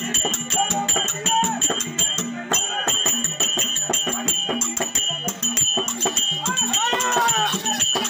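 Live Tamil folk-drama music: a mridangam drum playing a fast, steady rhythm with constant jingling percussion and a wavering melody line above it.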